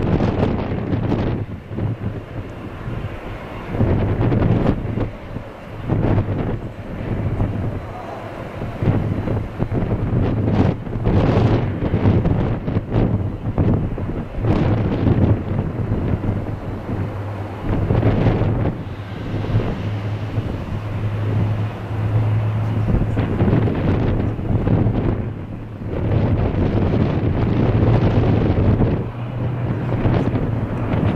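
Airbus A400M military transport's four turboprop engines and propellers giving a steady low hum as it flies a banking display pass, with wind gusting on the microphone in uneven surges.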